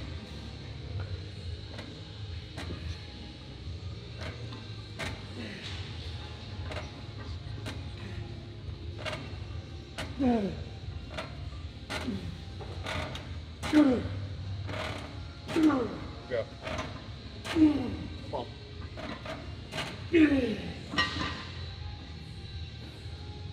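Plate-loaded chest-supported row machine clicking and clanking through a set of rows. In the second half a man gives short effortful grunts, each falling in pitch, roughly every two seconds as the reps get hard.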